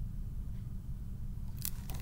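Steady low hum of the room and microphone, with a short crisp rustle of paper pages near the end as the picture book is handled and turned.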